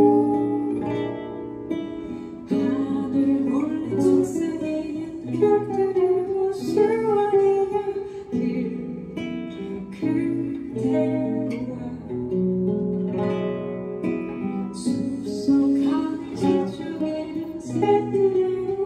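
Live song: an acoustic guitar picked and strummed under a woman's singing voice.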